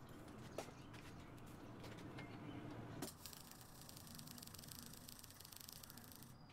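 MIG welder laying a short tack weld on a steel plate: a steady, fine crackle of the arc starts about halfway in and cuts off abruptly at the end, after a few small clicks as the torch is positioned.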